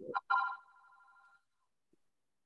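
A short pitched tone that fades away within about a second, followed by silence.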